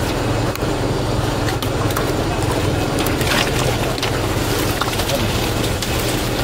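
A motor-driven water pump runs with a steady low hum as it drains the puddle. Scattered snaps and rustles come from water hyacinth stems being pulled apart by hand.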